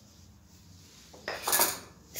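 Brief clatter of kitchen utensils and dishes knocking together, starting a little past a second in and lasting about half a second.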